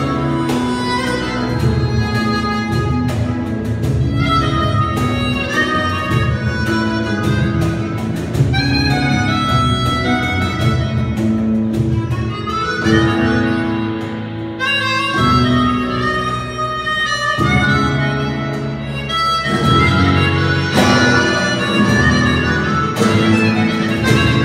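Live flamenco-jazz fandango played by a small band: a harmonica carries the melody over a flamenco guitar, an electric bass and hand percussion, with constant strummed and struck accents.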